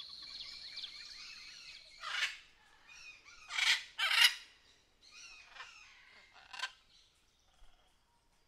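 Birds chirping over a faint steady high tone. About two seconds in, this gives way to several harsh, shrill cries of a bird of prey, coming a second or so apart.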